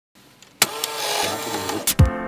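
Older analog car radio, with a push-button click followed by hiss and static: a steady rush with faint wavering whistles as if between stations, ending with another click.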